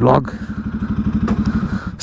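Motorcycle engine idling with an even, rapid low pulsing, shut off right at the end.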